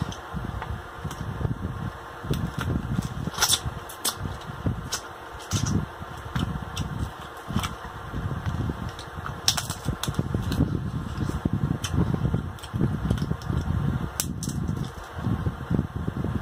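Close-miked chewing and lip-smacking while eating king crab, in an irregular run of soft wet pulses. Scattered sharp clicks and crackles come from the crab-leg shell being pulled apart by hand.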